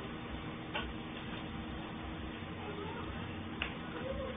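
Steady hiss and hum of a security-camera microphone, with two short sharp clicks, one about a second in and one near the end.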